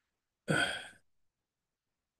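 A man's short hesitation sound, 'uh', lasting about half a second.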